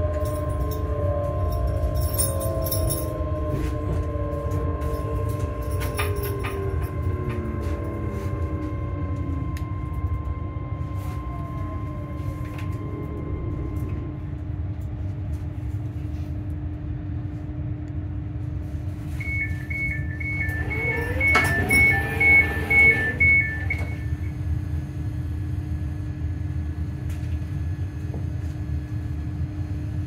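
Electric train braking into a station: the traction motors whine down in pitch over a steady low rumble of the wheels. About two-thirds of the way in, the door warning beeps rapidly for about five seconds, with a few thuds as the passenger doors slide open.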